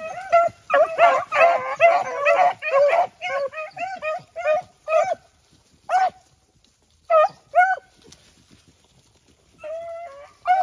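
A pack of beagles baying on a rabbit's trail. Several dogs overlap for the first three seconds, then single bays come about two a second. There is a pause of a couple of seconds near the end before they start again.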